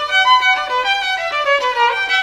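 Violin music: a violin playing a melody that moves quickly from note to note.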